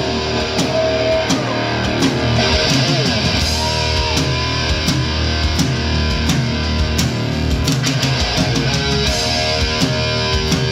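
Live heavy rock band playing an instrumental passage: electric guitar through Marshall amplifiers, electric bass and a drum kit, loud and dense with frequent drum hits.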